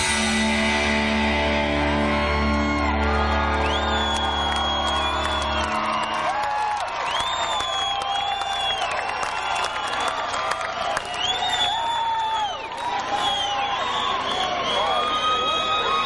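A rock band holds its final chord on electric guitar and bass until it stops about six seconds in. After that the crowd cheers, with whistles and whoops.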